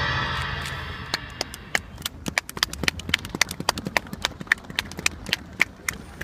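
The last chord of a live band's song dies away, then sparse, scattered handclaps follow: irregular sharp claps, several a second, for about five seconds.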